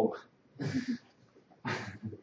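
A man's short breathy laughter: a voiced laugh trailing off, then two quick exhaled bursts of laughing breath.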